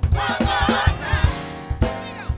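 Gospel praise team of several voices singing together into microphones, over accompaniment with a steady low beat about three times a second.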